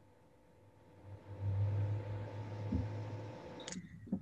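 A person taking a slow, deep breath close to a laptop microphone. It lasts about two seconds, starting about a second in, and comes through mostly as a low rumble.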